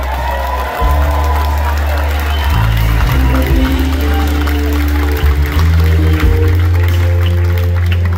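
Live rock band playing a quiet instrumental vamp: held bass notes stepping to a new pitch every second or two under sustained chords.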